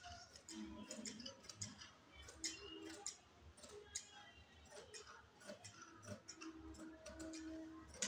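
Tailoring scissors cutting through folded dress fabric along a chalked line, a faint, irregular series of short snipping clicks as the blades close.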